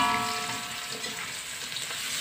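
Sliced angled luffa tipped into a hot aluminium wok of sautéed spices, sizzling steadily in the oil. A metallic ring from the wok at the start fades over about a second.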